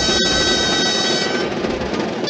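Live dance music for a ribbon dance: a wind instrument holds a long note that stops about two-thirds of the way through, with the next phrase starting just after.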